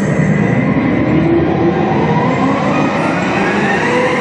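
A sound effect in the dance music's intro: a dense rumbling noise with a pitch that rises steadily over about three seconds, building up into the song.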